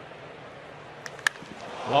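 Low, steady ballpark crowd noise, then about a second in a single sharp crack of a wooden bat squarely hitting a pitched baseball.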